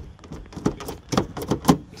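Jeep Grand Cherokee WJ liftgate handle being pulled, its latch clicking several times in quick succession without the gate opening: something is stuck on the passenger-side latch.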